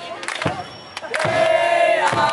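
A group of football fans shouting a chant together, with a few sharp claps; the shout swells and is held from just past a second in.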